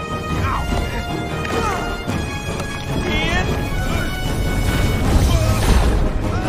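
Film soundtrack: score music with short yelps and cries from the characters over crashing impacts and a low rumble that grows louder toward the end.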